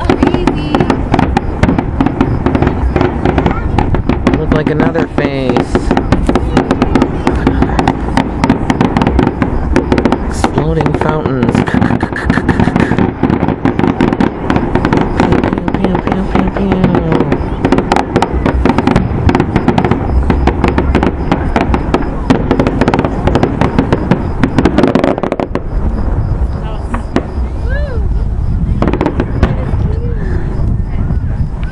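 Fireworks show with a dense, rapid barrage of bangs and crackling that thins out near the end.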